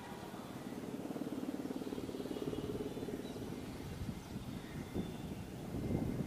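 Mil Mi-171Sh helicopter flying past at a distance, its main rotor beating fast and steadily and growing louder over the first second or so.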